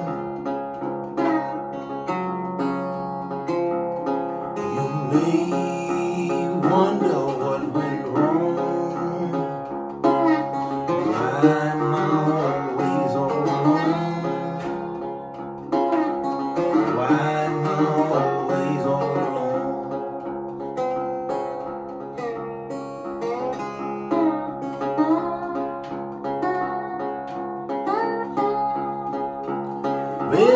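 Metal-bodied resonator guitar fingerpicked and played with a slide in a blues style, its notes often gliding up and down in pitch.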